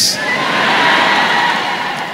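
Congregation cheering and shouting in response to a preached declaration, a sustained wash of many voices that eases off near the end.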